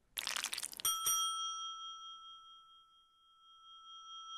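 A short crackling crunch, then a single bright bell-like ding that rings on and slowly fades.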